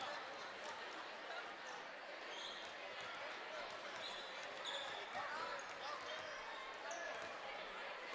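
Several basketballs bouncing on a hardwood gym floor during warm-up shooting, over steady crowd chatter, with a few short high sneaker squeaks.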